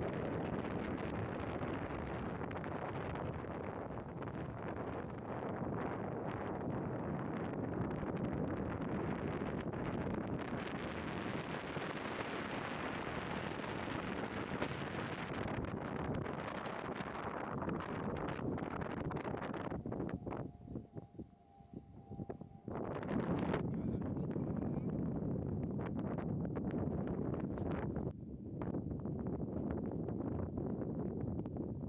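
Wind buffeting the microphone: a steady, rough rushing noise that drops away for a short lull of about two seconds some two-thirds of the way in.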